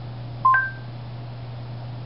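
A smart speaker's electronic chime: two short pure tones, a lower note and then a higher one, about half a second in.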